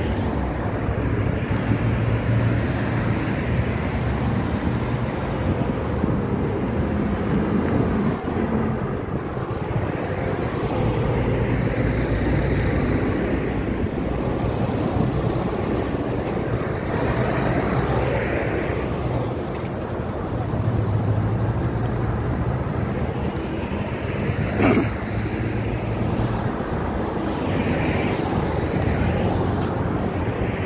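Steady road traffic with vehicles swelling past every few seconds, and wind rumbling on the microphone. A single sharp knock about 25 seconds in.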